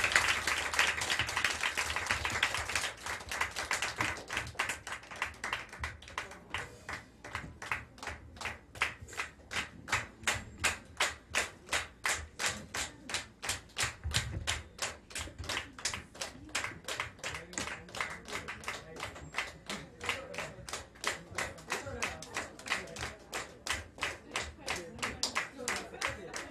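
Audience applause that settles within a few seconds into steady clapping in unison, about three claps a second: a crowd clapping for an encore.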